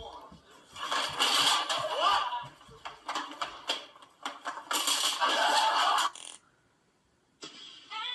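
Two loud bursts of a voice mixed with rough, hissy noise, played back through a computer speaker, with a second of silence about six seconds in.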